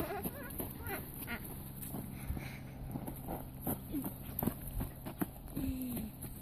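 Standard poodle puppies whining and yipping in short, wavering calls as they play, with scattered short clicks and rustles in between.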